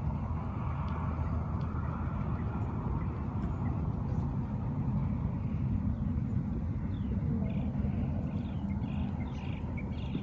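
Steady low wind noise on the microphone outdoors, with short bird chirps from about seven seconds in.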